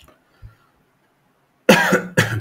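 A man coughs once, loudly, near the end, after a quiet stretch.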